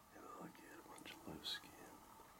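A person whispering a few quiet words. A short, sharp click comes about one and a half seconds in.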